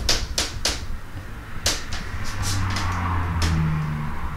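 A series of light, irregular clicks or taps, about eight in four seconds, over a low hum.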